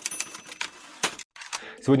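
Typewriter key-click sound effect for on-screen title text being typed out: a quick, irregular run of sharp clicks that stops about a second in.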